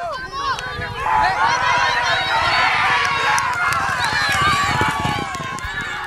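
A crowd of spectators shouting and cheering, many voices at once, swelling loudly about a second in, over the hoofbeats of two racehorses galloping past on a dirt track.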